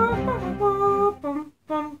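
A single voice humming a short melody: one long held note, then a few short notes, broken by a brief pause.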